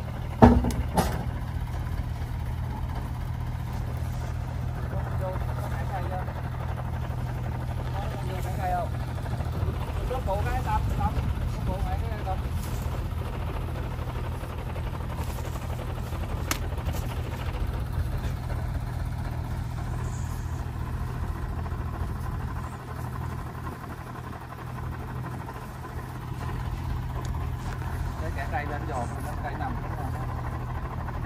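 Belarus 1052 tractor's diesel engine idling steadily, a constant low hum, with a single sharp knock about half a second in.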